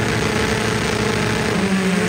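Engines of two drag-racing cars, a Honda Civic hatchback and an Acura Integra, running at steady revs while staged on the starting line.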